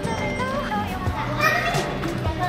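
Several young children playing, their high voices calling out and overlapping, with footfalls as they run about.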